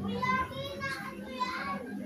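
A high-pitched voice, a child's, calls out twice: once briefly, then longer with a falling pitch. A steady low hum runs underneath.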